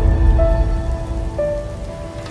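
Logo-intro music: held synth notes that step to a new pitch twice, over a deep rumble and a hissing, rain-like noise effect.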